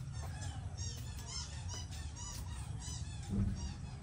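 Small birds chirping in quick repeated high notes over a low steady rumble, with a door thudding shut a little after three seconds in.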